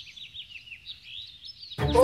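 Small birds chirping: a quick, steady run of short, high, downward-falling chirps, several a second. Near the end, loud music and voices cut in over it.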